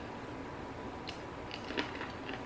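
Close-up mouth sounds of eating: quiet chewing, then a few sharp crunchy clicks in the second half as a breaded fried chicken wing is bitten, the loudest just before the end.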